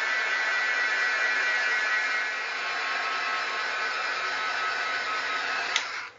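Craft heat gun running steadily, rushing air with a faint motor whine, as it heat-sets wet rust effects paste; it is switched off just before the end.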